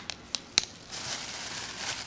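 A thin plastic carrier bag being handled: a few sharp crinkles in the first second, then a faint rustle.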